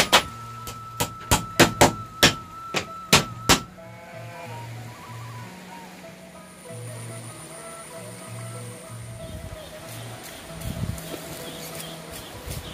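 A run of about eight hammer blows on a floor of flattened split bamboo (talupuh), nailing the slats down, over the first three and a half seconds. Background music follows.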